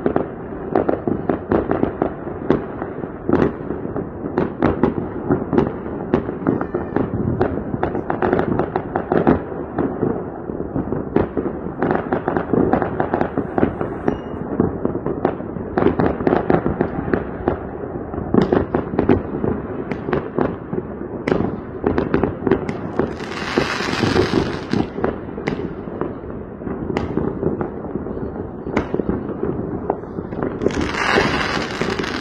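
Many fireworks and firecrackers going off at a distance: a continuous, overlapping barrage of bangs and pops with no break. A brief hissing rush stands out about three-quarters of the way through.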